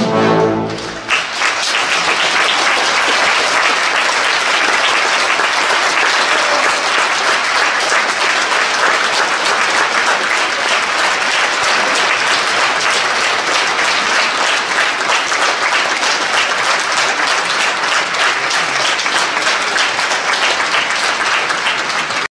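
An orchestra's final chord dies away about a second in. Steady theatre-audience applause follows and carries on to the end.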